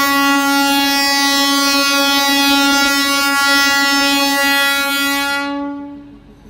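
Train air horn sounded in one long, loud, steady-pitched blast that fades and stops near the end.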